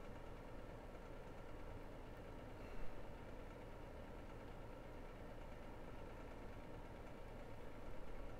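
Quiet, steady background hum of room tone, with one faint brief sound about three seconds in.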